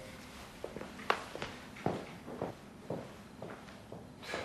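Footsteps on a wooden floor: about nine soft, unevenly spaced steps as people walk away.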